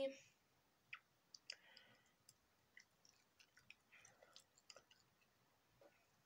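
Near silence broken by faint, scattered soft clicks and light rubbing as a concealer stick is dabbed against the camera in a pretend application under the eyes.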